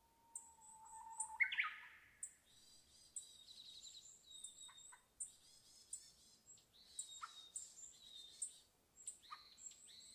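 Several birds chirping and calling in short, high-pitched notes throughout. Early on a steady lower whistle is held for about a second and a half, then breaks into one louder sharp call.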